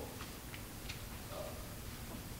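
A few faint, light clicks, about three in the first second, over quiet room tone.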